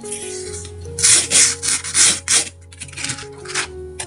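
Coloured craft sand rubbed across a sand-painting board and sliding off as the board is tipped up: a run of loud gritty rushes about a second in and another near the end, over soft background music.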